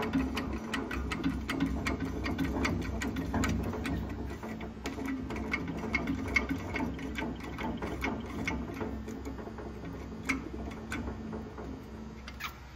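Hydraulic cam bearing installer pulling a cam bearing into its bore in a small-block Chevy block: a steady low running sound with rapid, irregular clicking throughout, easing slightly near the end as the bearing seats.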